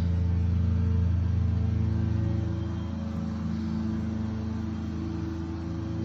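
Lawn mower engine running steadily, a little quieter after about two and a half seconds.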